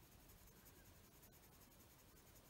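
Very faint scratching of a black watercolour pencil colouring in small strokes on card.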